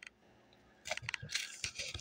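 Small plastic zip-top seed packet being handled, crinkling and clicking in a quick, irregular run of small sounds over the second half.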